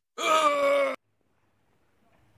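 A person's short, pitched groan of pain, under a second long, acted as the cry of someone who has just been shot.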